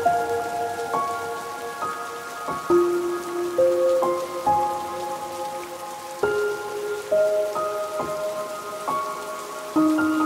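Steady rain falling, mixed with slow, soft instrumental music of single held notes, each struck and left to ring, a new one about every second.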